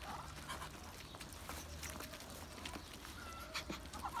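A flock of Muscovy ducks feeding on the ground: many quick, irregular clicks of bills pecking at food, with a few soft calls among them.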